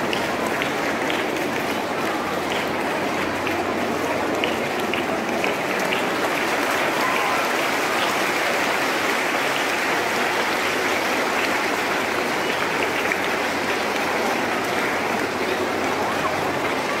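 Audience applauding, a dense, steady clapping that keeps on without a break.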